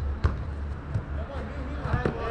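A football kicked sharply on artificial turf about a quarter second in, followed by a few lighter knocks of play, over a steady low rumble and faint players' voices.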